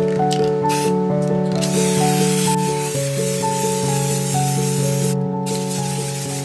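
Aerosol spray paint can spraying: a short hiss about a second in, then one long spray of about three and a half seconds, and another starting near the end, over background music.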